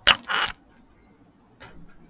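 A sharp click followed at once by a brief clattering rattle of small hard objects, then a fainter knock about a second and a half later.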